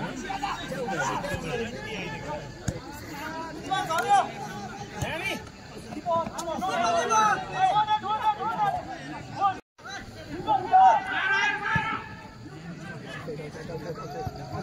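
Spectators' voices at a football match, several people talking and calling out over one another. The sound cuts out completely for a moment a little under ten seconds in.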